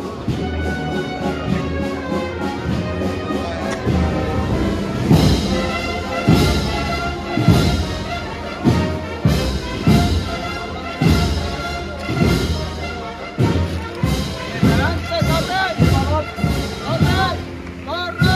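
A brass band playing a slow processional march, with a steady drum beat coming in about five seconds in.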